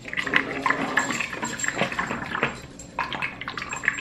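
Smoothie sloshing inside a plastic bottle as it is shaken hard, in quick irregular strokes with a short break about two-thirds of the way through. The shaking mixes back a smoothie that has probably settled to the bottom.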